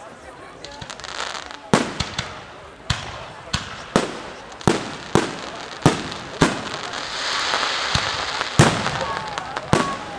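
Aerial firework shells bursting in a rapid series of sharp bangs, roughly one a second, with a dense crackling hiss swelling for a couple of seconds from about seven seconds in.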